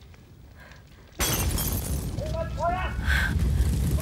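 After a quiet second, a sudden loud crash of shattering glass over a deep rumble, followed by a few short shouted cries.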